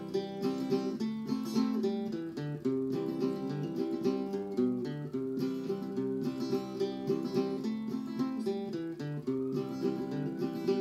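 Acoustic guitar played solo between the sung verses of an old-time ballad: a steady, rhythmic run of picked and strummed notes carrying the tune.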